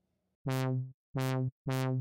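Three short synthesizer notes from a sawtooth wave run through a low-pass filter whose cutoff an ADSR envelope sweeps up and back down, so each note goes 'wow', opening bright and turning darker as it dies away. The notes start about half a second in.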